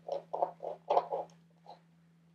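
A marker writing a word on a construction-paper leaf: a quick run of short strokes in the first second and a half, then one more stroke near the end.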